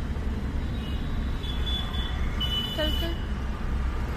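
Car cabin rumble of the engine and road, with several short high-pitched horn toots from the surrounding traffic.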